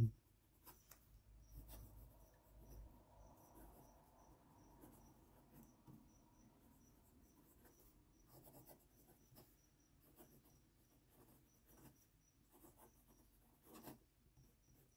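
Faint scratching of a Parker 45 fountain pen nib gliding over notepad paper while a line of handwriting is written, in short strokes with small pauses between words.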